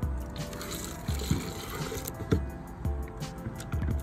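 Bleach being poured into a plastic container of shoelaces, the liquid splashing onto them, over background music with a steady beat.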